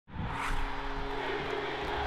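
Produced intro sound effect: a broad rushing whoosh with a couple of low held tones, swelling up quickly from silence at the very start and then holding steady.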